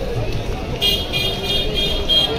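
A high-pitched tone pulsing on and off several times a second starts about a second in, over the low murmur of a waiting crowd.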